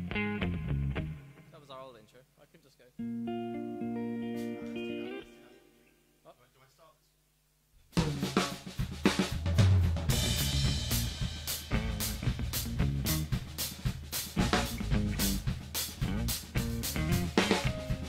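Electric guitar picking a few notes, then holding chords that die away almost to silence. About eight seconds in, a Yamaha drum kit and the guitar come in together and play on as a full band.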